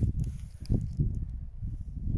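Gusty wind buffeting the microphone, a low uneven rumble, with a few short thumps in it.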